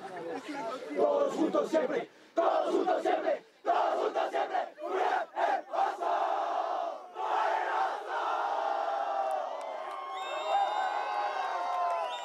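A sports team shouting a chant together in a huddle, in short rhythmic bursts, breaking into one long sustained cheer about seven seconds in. A music sting fades in near the end.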